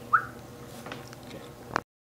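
A brief rising squeak just after the start, then low room tone with a few faint ticks, and a sharp click near the end as the recording cuts off.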